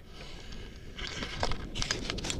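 Rustling, crackling handling noise on the camera's microphone as the camera is moved, getting louder about a second in with a few sharp clicks.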